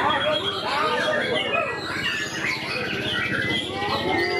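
White-rumped shama singing a rapid, varied song of whistles and trills, heard over a steady background of crowd chatter.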